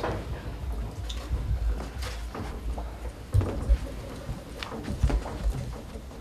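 Low rumble of a handheld camera being moved, with scattered light knocks and shuffling as a small group walks through a room, and faint murmured voices.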